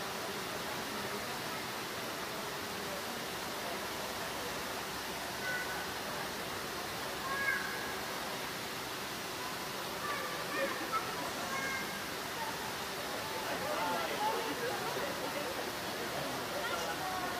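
Steady rushing background noise with faint, indistinct voices of people nearby; from about five seconds in there are a few short, high-pitched sounds among the murmur.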